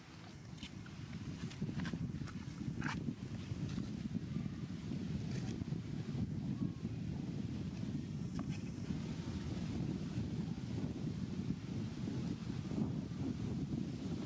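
Low rumble of wind buffeting the microphone, building over the first two seconds and then holding steady. A few faint short high chirps or clicks sound above it.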